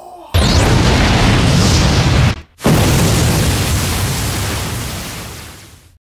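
Anime-style energy-beam blast sound effect: a sudden, loud rushing blast that opens with a falling whistle. It breaks off briefly about two and a half seconds in, then resumes and fades away.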